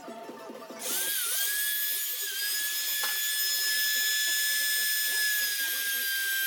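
Compact handheld trim router running at high speed while routing letters into a wooden slab: a loud, high-pitched whine that starts about a second in, holds steady and sags slightly in pitch near the end as the bit cuts.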